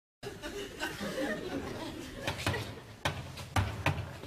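Indistinct voices chattering, followed by a series of about five sharp knocks in the second half.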